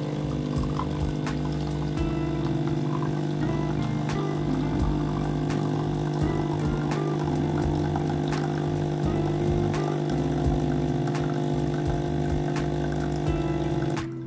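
Capsule coffee machine's pump running with a steady buzzing hum as it brews coffee into a glass mug.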